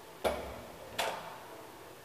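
Two sharp mechanical clunks about three quarters of a second apart, each ringing briefly, from a 1939 KONE traction elevator travelling past a landing, heard inside its gated car.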